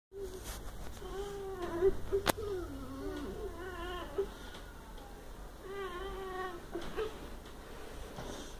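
A string of drawn-out, wavering, cat-like vocal cries, several in a row, with one sharp click a little past two seconds in.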